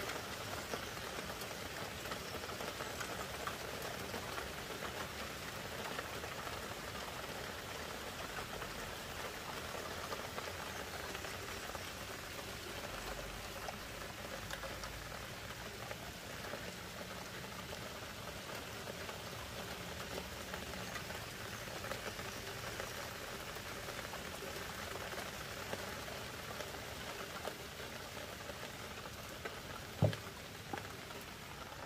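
Heavy rain hammering down in a steady, even hiss.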